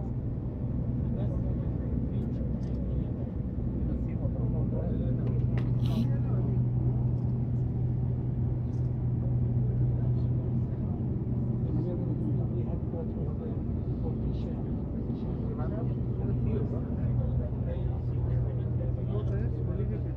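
Steady low hum of a tour boat's engine, heard from inside the enclosed passenger cabin while the boat is under way, with a faint wash of water and small clicks and knocks.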